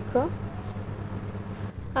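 A steady low hum under a faint, even background noise, after a single spoken word at the very start.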